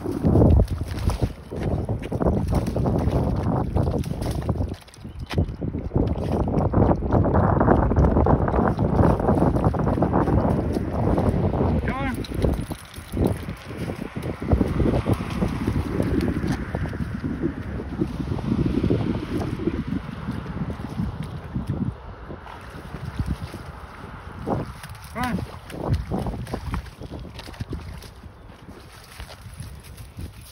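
Wind buffeting the phone microphone, a loud rumble that is heaviest in the first twelve seconds and eases after that, with scattered short knocks.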